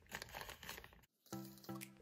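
Faint crinkling of a thin plastic bag being wiped with a damp paper towel. After a brief silence, faint background music with held notes begins.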